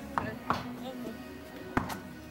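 Background music with voices mixed in, and three short sharp knocks, the loudest near the end.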